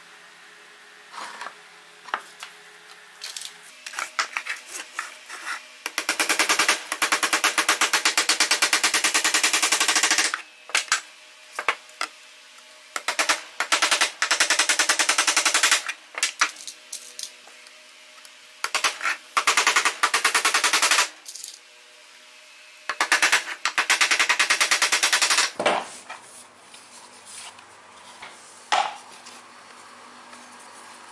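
A saw cutting through PVC pipe in four bursts of a few seconds each, with shorter strokes between them, the teeth rasping rapidly through the plastic.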